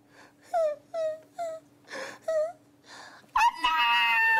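A performer imitating a small child crying for a puppet: a string of short whimpering sobs, 'heuk, heuk', each falling in pitch, with breaths between them. About three and a half seconds in, a loud, drawn-out wail begins.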